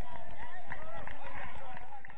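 Several footballers shouting and calling to each other during play, voices overlapping, over short low thuds of running feet.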